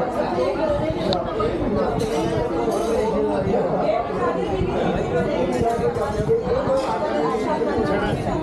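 Several people talking at once: overlapping conversation chatter among a seated group in a room.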